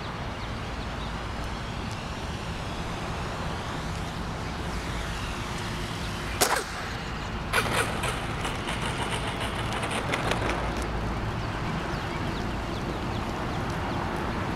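Distant glow-fuel (nitro) engine of a radio-controlled Sbach aerobatic model plane droning in flight under heavy rumble from wind on the microphone. A sharp knock comes about six and a half seconds in, and a short rattling stretch follows from about eight to ten seconds.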